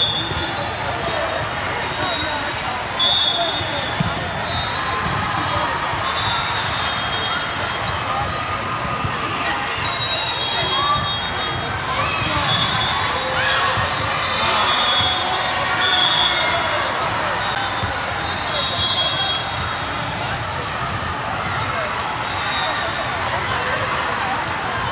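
Busy, echoing hall of a multi-court volleyball tournament: continuous chatter of many voices, with sharp ball hits and short high-pitched squeaks scattered through it.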